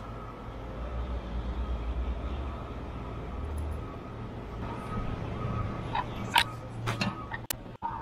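Stick-welding arc burning on a 7018 rod as the cap pass is laid, for about the first three and a half seconds, then stopping. A few sharp knocks and clicks follow near the end.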